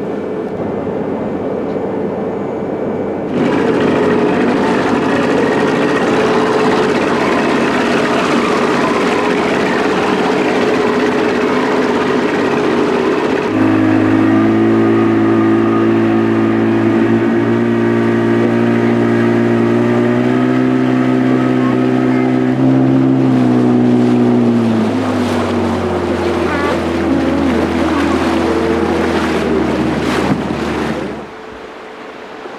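Boat engines running. At first a steady hum in the ship's wheelhouse, then a spell of louder rushing noise, then the motor of a small tender boat running with a strong steady note that drops lower about 25 seconds in as it eases off nearing the landing.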